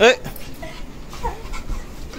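A dog whimpering in excitement as it greets someone: one short, loud, steeply rising whine right at the start, then softer whines.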